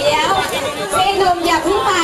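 Speech: people talking, with chatter of several voices.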